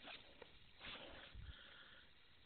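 Near silence, with two or three faint low thumps about a second in.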